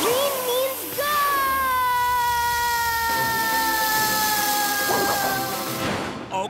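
Cartoon soundtrack of a jet spray hissing steadily, joined about a second in by one long held note that slowly falls in pitch. The hiss cuts off sharply near the end, over background music.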